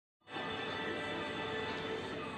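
Music playing from a television, starting abruptly just after the start and holding at a steady level.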